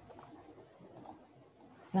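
A few faint, light clicks over quiet room tone, with a short spoken word starting just at the end.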